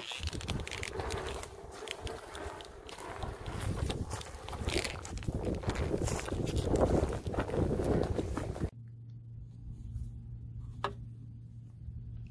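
Footsteps through dry grass, with rustling and knocks as a synthetic winch rope is pulled out by hand from the winch drum. About nine seconds in the sound cuts abruptly to a quieter steady low hum.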